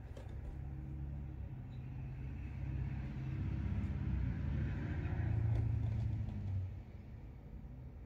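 Low rumble of a motor vehicle. It swells over a few seconds and drops away sharply about three-quarters of the way through, with a few faint clicks on top.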